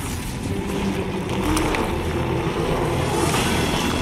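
Action-movie sound effects: a loud, dense, continuous rumble with a faint low pitched tone wavering through its middle.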